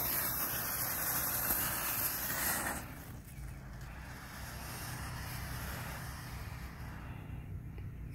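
Small hand-held smoke bomb going off: the lit fuse sparks with a hiss for about three seconds, then a quieter steady hiss as the ball vents its smoke.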